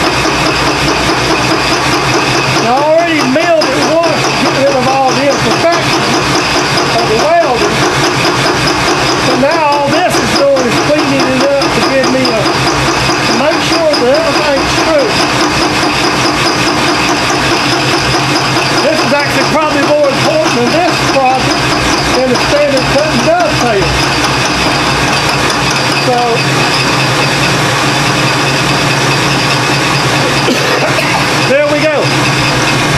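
Vertical milling machine running steadily with a fly cutter taking a light skim cut, about ten thousandths, across the top of a welded tool block to clean it up.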